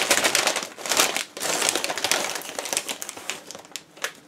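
Plastic snack bag crinkling as it is pulled open and a hand reaches inside: a dense crackle, loudest in the first half and thinning out toward the end.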